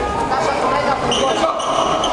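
Sounds of an indoor handball game: a handball bouncing on the wooden court amid players' and spectators' voices, echoing in the sports hall.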